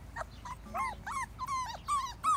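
Bullmastiff puppies whimpering and yipping: a quick run of short, high cries that rise and fall, about five a second, several pups overlapping.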